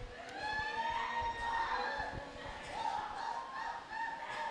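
A congregation praying aloud all at once, heard faintly: many overlapping voices with rising and falling pitches.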